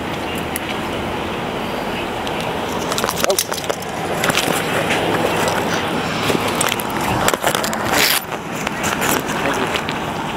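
Handling noise from a hand-held digital camera being moved and stowed: rubbing, scraping and knocks on its built-in microphone, busiest around three to four seconds in and again near eight seconds, over a steady street background.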